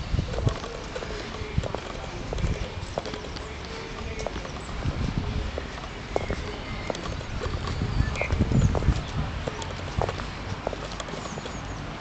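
Footsteps of a person walking on a paved path, an irregular patter of light strikes, with bursts of low rumbling on the microphone, strongest about eight seconds in.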